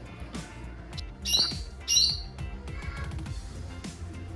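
Two short, loud squawks from a pet green parakeet, about a second and two seconds in, over steady background music.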